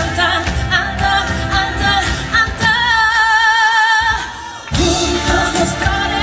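Live pop band with a female lead vocal, electric guitar, bass, drums and keyboards. Partway through, the band thins out under one long high note with vibrato, then the full band comes back in near the end.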